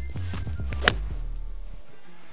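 A six-iron striking a golf ball once: a single sharp click a little under a second in, over steady background music.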